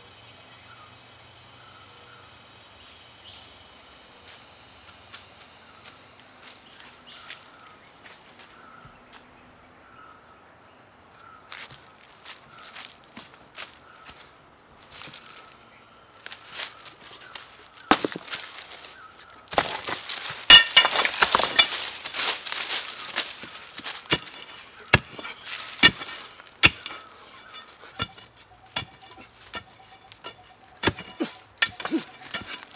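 Forest ambience with a bird's short chirps repeating steadily and high insect-like tones. Later come footsteps and rustling in dry leaf litter, building to a loud spell of rustling and scraping about two-thirds of the way through, then a run of short sharp strikes near the end.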